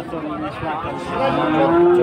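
Cattle mooing: one long, steady call in the second half that rises slightly in pitch, over the chatter of people around.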